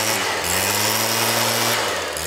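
Stihl backpack leaf blower's small engine running steadily with the rush of air from its tube, getting a little louder and brighter about half a second in and easing off just before the end.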